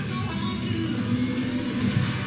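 Background workout music.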